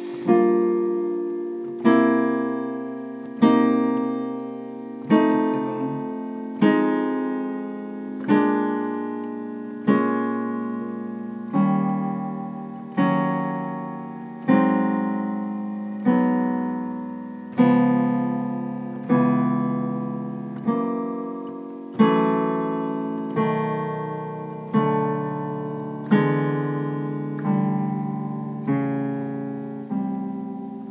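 Piano playing a slow ii–V7 progression around the circle of fifths in shell voicings, the root with the 3rd and 7th of each chord. About every one and a half seconds a new chord is struck and left to ring and die away, so the 3rd and 7th move smoothly from chord to chord.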